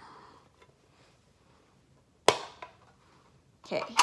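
Near silence, broken about two seconds in by one sharp, loud click with a brief ring and a fainter tick just after: the metal pencil case tin being handled.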